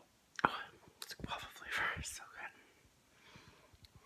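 A woman whispering: a couple of seconds of breathy, unvoiced words, then quiet.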